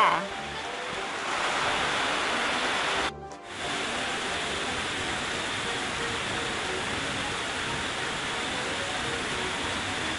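Steady hissing background noise, with a short dip about three seconds in.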